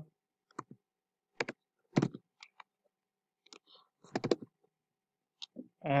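Scattered computer mouse and keyboard clicks: about ten short, sharp clicks spread irregularly over several seconds, with a small cluster about four seconds in.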